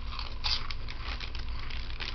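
A man sipping from a plastic cup close to the microphone: a run of short, clicky mouth and sip sounds, the loudest about half a second in, over a steady low hum.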